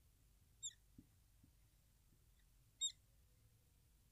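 Marker squeaking on a whiteboard during writing: two short high squeaks about two seconds apart, over near silence.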